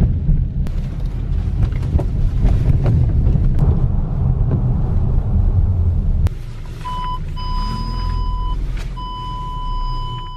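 Car in motion, a steady low rumble of engine and road inside the cabin. After a cut about six seconds in the rumble drops, and a car's parking-sensor warning sounds: a short beep, then longer tones at the same pitch, the last one nearly continuous.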